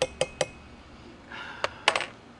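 A few sharp clinks of glassware and metal cups on the bar, about a fifth of a second apart at first, one leaving a brief ringing tone, and another louder clink near the end.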